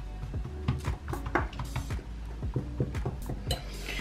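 A metal fork pressing and crimping the edge of a raw dough pastry, its tines making repeated light irregular clicks against the worktop, over background music.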